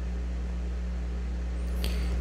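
A steady low hum with faint background hiss: the recording's room tone in a pause between speech.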